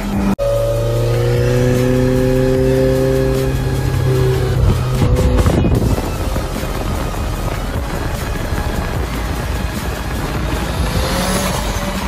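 Mitsubishi Lancer Evolution X's turbocharged engine and exhaust as the car drives past. Its note falls slowly in pitch over the first few seconds, gives way to rougher engine and road noise, and rises again near the end.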